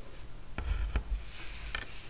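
Pencil drawing a line along a plastic set square on paper: scratchy strokes of graphite, with a couple of light knocks as the set square is handled.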